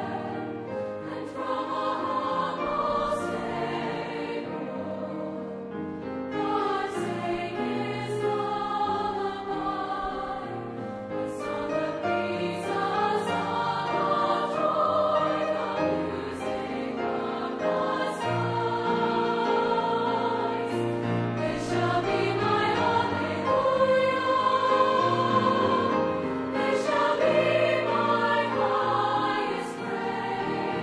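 A large mixed choir singing in parts, many voices holding and moving between chords, with crisp consonants sounding together. It grows louder in the second half.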